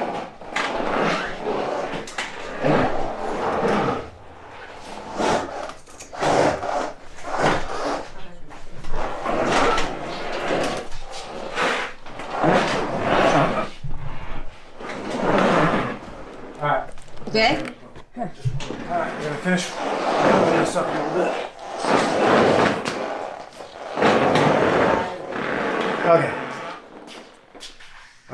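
Indistinct voices in short bursts with pauses between, while a Can-Am Maverick X3 side-by-side is pushed by hand.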